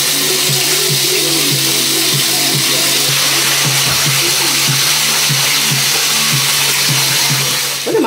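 Water running hard into a bathtub as it is rinsed out, cutting off just before the end, over a hip-hop song with a steady beat playing from a smart speaker.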